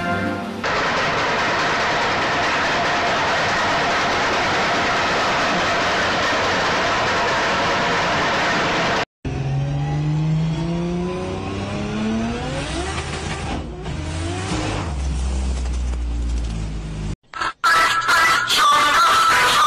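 A loud, steady rushing noise fills the first half. After a sudden cut comes a car engine heard from inside the cabin, revving up with its pitch rising several times as it pulls through the gears. It then settles into a steady low drone before cutting off shortly before the end.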